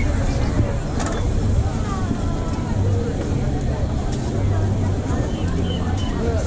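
Street-market background: indistinct voices over a steady low rumble, with meat sizzling on the grill and a sharp click about a second in.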